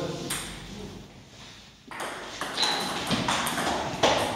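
Table tennis ball clicking sharply against bats and the table: one click about a third of a second in, then a quick run of clicks from about two seconds in.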